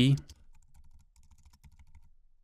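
Computer keyboard typing: a run of light, irregular keystrokes.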